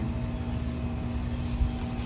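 Steady low mechanical hum with one constant tone, over a faint low rumble.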